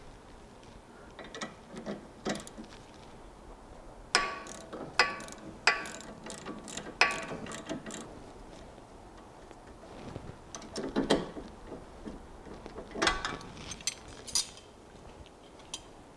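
Hand tools loosening a car's sway bar end link nut: ratchet clicks and metal-on-metal clinks of the wrench on the link, in scattered bursts with a short metallic ring. The loudest clinks come between about four and seven seconds in, with more near the middle and end.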